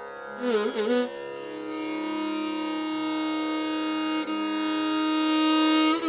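Carnatic violin playing a short phrase with sliding, wavering ornaments about half a second in, then holding one long steady note, over a steady drone.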